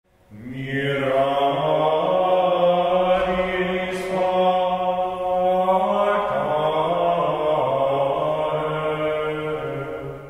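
Men's voices singing Gregorian chant in unison: one melodic line of held notes moving up and down in small steps.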